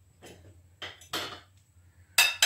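Dry seasoned croutons and a glass bowl being handled over a parchment-lined baking tray: a few brief scraping rattles as the croutons are tipped and spread.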